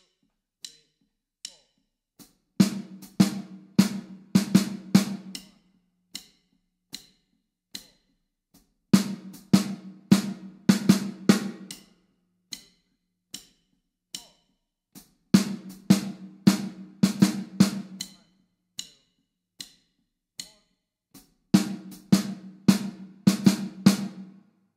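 Snare drum played with sticks: the 'groupings of three' fill rhythm, a stroke on every third sixteenth note ending in two straight eighth notes, repeated four times about six seconds apart. Quiet, evenly spaced ticks keep time between the phrases.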